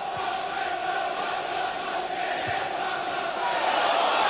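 Football stadium crowd noise with massed chanting, steady throughout and growing a little louder near the end.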